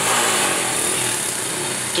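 Two stock Honda EX5 100cc drag bikes' small single-cylinder four-stroke engines running loudly together at the start line, a dense steady buzz with no single clear pitch.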